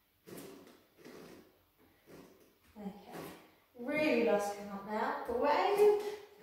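A woman's short, soft breaths during the first few seconds, then from about four seconds in her voice in long, drawn-out pitched sounds.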